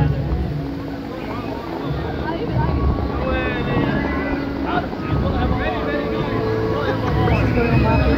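The Dubai Fountain's high water jets rushing and spraying in a steady roar of water noise, with crowd voices mixed in.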